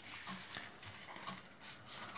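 Faint rustling and soft ticks of a deck of playing cards being gathered together on a cloth close-up mat and squared in the hands.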